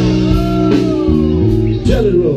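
Live slow blues played by an electric band: electric guitar over bass and drums, with a long note that bends up and back down in the middle.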